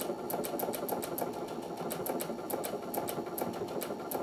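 Brother sewing and embroidery machine running steadily, its needle mechanism ticking quickly and evenly as it sews a wide sideways-fed decorative wave stitch.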